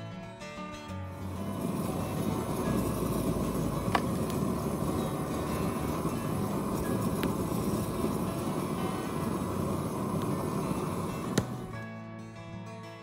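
Propane torch blowing flame into a log campfire with a steady loud rush, and two sharp cracks, one about four seconds in and one near the end. Guitar music stops just after the start and comes back at the end.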